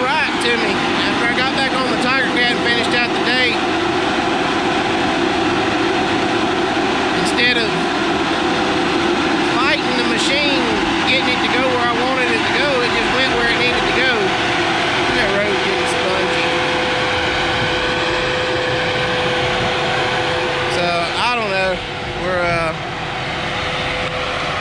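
John Deere grapple skidder's diesel engine running under load as the machine back-drags the road with its blade, with a steady whine standing out over the engine noise for a few seconds past the middle.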